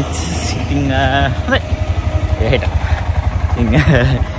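Three-wheeler auto rickshaw engine idling close by with a fast, even chugging that becomes plain about a second in. Short bits of voice come over it.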